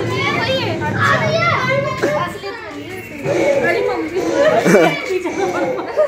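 Several children's voices shouting and chattering excitedly over one another, quieter for about a second between two and three seconds in.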